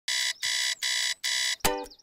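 Electronic alarm clock beeping four times in quick succession, about two beeps a second. Near the end a ukulele chord is strummed and rings on.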